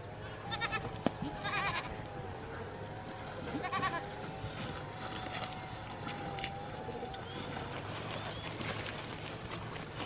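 Goats bleating: three short calls in the first four seconds as they crowd in to feed.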